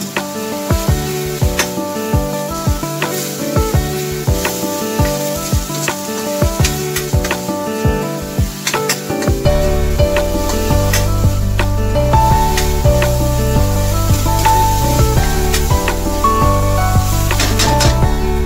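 Diced eggplant and vegetables sautéing in oil in a wok, sizzling as a spatula stirs them, under background music that a bass line joins about halfway through.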